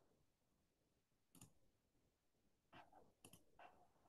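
Near silence broken by a few faint computer mouse clicks: one about a second and a half in, then a quick cluster of three or four near the end.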